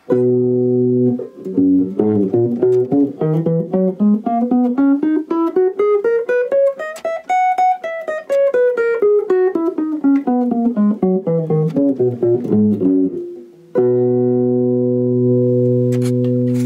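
Eight-string guitar playing a C major scale in octaves, clean and unaccompanied: a held chord, then paired notes stepping steadily up for about six seconds and back down again, ending on the same chord, which rings on.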